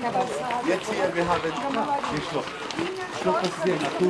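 People talking nearby, over footsteps crunching on a gravel path.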